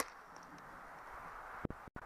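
The last shot from a paintball marker dies away right at the start, then a faint steady hiss of outdoor background noise, with a single soft knock near the end.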